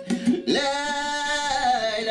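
A man singing to his own acoustic guitar. A few plucked notes open, then he holds a long sung note from about half a second in, and it steps down in pitch near the end.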